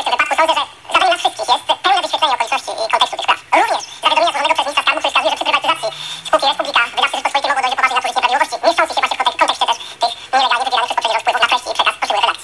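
A person talking almost without pause, the voice thin and narrow as if heard over a telephone line.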